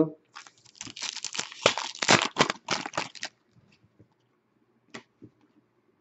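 An O-Pee-Chee Platinum hockey card pack's wrapper being torn open and crinkled for about three seconds, then a single faint click about five seconds in.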